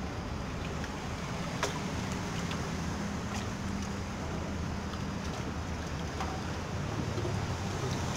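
A low, steady motor drone from a passing boat's engine, over a bed of wind and surf noise, with a few faint clicks.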